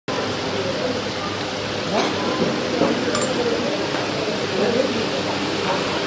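Indistinct chatter of several people talking at once over a steady hiss, with a couple of faint clicks about two and three seconds in.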